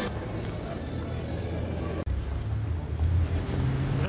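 Low rumble of city street traffic. A brief dropout about halfway through, after which the rumble is stronger.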